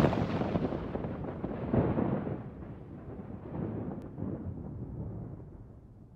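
Deep booming rumble sound effect like rolling thunder, decaying after a heavy hit. It swells again about two seconds in and again around four seconds, then fades away near the end.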